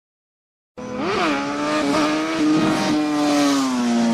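Logo sting sound effect, engine-like: it starts abruptly, swoops up and back down in pitch about a second in, then holds a steady, slightly falling tone.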